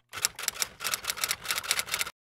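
Typewriter keys striking in a rapid run, about seven clacks a second, starting a moment in.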